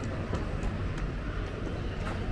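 Busy pedestrian street ambience: a steady low rumble under a general hubbub, with light ticks of footsteps on paving a few times a second.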